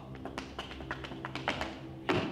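Shoes tapping on a wooden stage floor in quick, uneven dance steps, about five or six taps a second, over a steady low musical drone.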